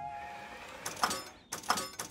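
Background music fading out, then a few short mechanical clicks and knocks near the end: a cartoon robot pressing a lift's up button.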